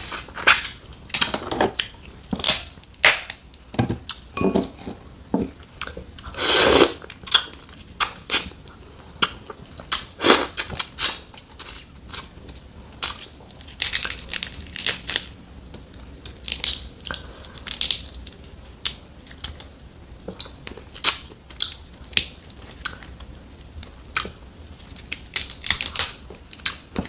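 Snow crab leg shells cracked and peeled apart by hand, with many short, irregular crackles and snaps, and eating sounds from the mouth in between.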